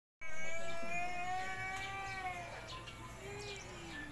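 Two drawn-out pitched calls: a long one held fairly steady for about two seconds, then a shorter, lower one that falls away near the end.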